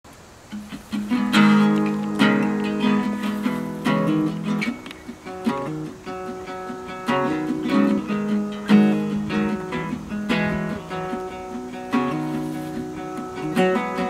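Acoustic archtop guitar playing a picked instrumental intro. It starts about half a second in, with plucked notes ringing over a sustained lower part.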